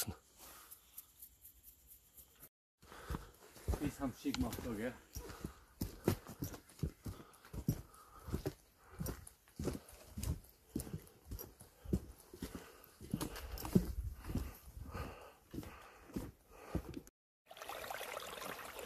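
Footsteps on a wooden boardwalk and plank steps, irregular hollow knocks starting a couple of seconds in and stopping shortly before the end.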